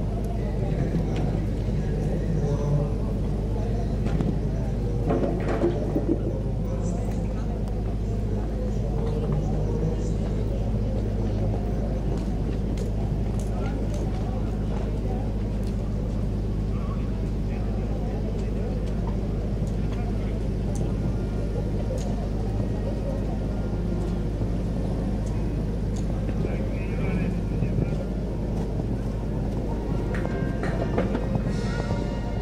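Open-air ambience: a steady low rumble with indistinct voices in the background.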